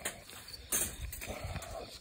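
Crickets chirping in the background, with one short, sharp metallic rattle about a second in as the wire-mesh live trap is lifted and handled.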